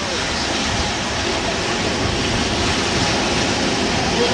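Steady rushing noise of surf and wind.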